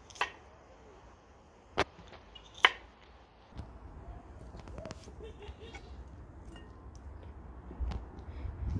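A kitchen knife chopping cucumbers on a wooden cutting board: three sharp cuts in the first three seconds. Then softer knocks and clicks as cucumber chunks are dropped into a glass bowl.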